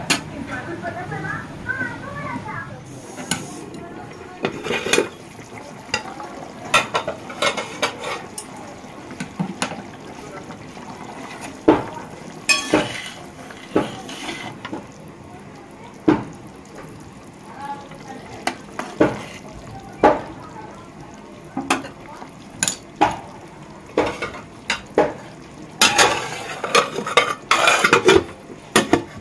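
A metal spatula knocks and scrapes against an aluminium kadai while a curry is stirred, over a low simmering sizzle. The knocks are irregular, every second or two. Near the end comes a burst of clattering as the aluminium lid is set on the pan with tongs.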